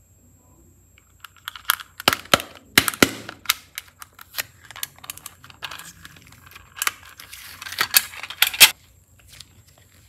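Hands handling and prying open a small hard plastic toy case, close to the microphone: a string of sharp plastic clicks and crackles, loudest about two to three seconds in and again near the end.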